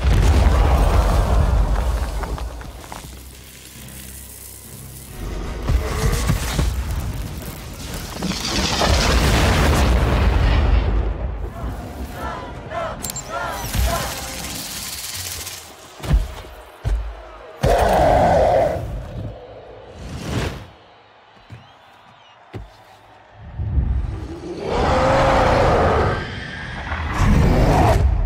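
Film fight soundtrack: music mixed with heavy booms and sharp impact hits, with quieter stretches in between.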